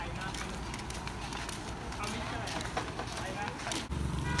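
Footsteps on a paved street as several people walk, with faint voices in the background.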